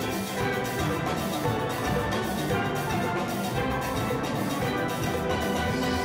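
Steel band playing: a full ensemble of steel pans ringing out a fast, steady run of struck notes, with drums beneath.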